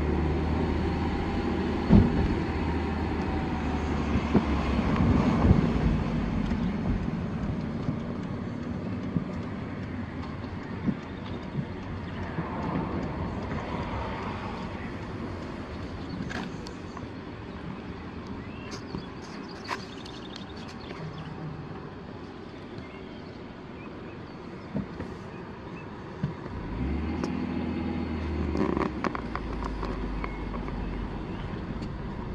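Car cabin noise while driving: a steady low engine and tyre rumble. It eases off through the middle and picks up again near the end, with a few scattered light clicks.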